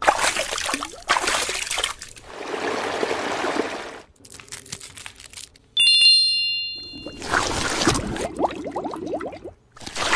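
Several short bursts of rustling, scratchy noise as a fluffy plush toy is handled, with a bright chime-like ding about six seconds in.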